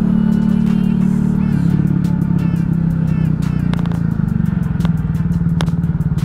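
Italika 250Z motorcycle engine running while riding, its pitch dropping in steps about a second and a half in and again about four seconds in as the bike slows.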